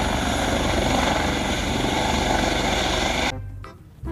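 Helicopter sound effect: a steady, loud rotor-and-engine noise that cuts off about three seconds in, then fades away.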